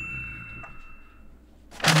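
The tail of a bright, bell-like ding sound effect, ringing out and fading over about the first second. Near the end, a voice and a louder burst of sound begin.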